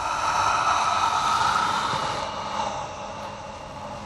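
A loud, sustained rushing roar with a steady ringing edge that swells up quickly, holds, and then slowly dies away: a dramatic sound effect.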